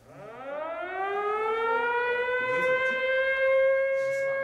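A siren winding up: one wailing tone that rises in pitch over the first two seconds, then holds steady and loud.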